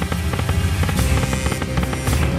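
Slot-game sound effects from Book of Ra Deluxe 10 as the reels spin and stop: rapid, evenly repeating clicks over electronic game music, with a steady held tone coming in about halfway.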